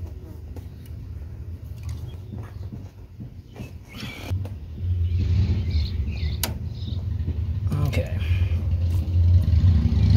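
Light metallic clicks of steel feeler gauge blades being handled and slid between rocker arms and valve stems, over a low rumble that grows louder from about halfway through.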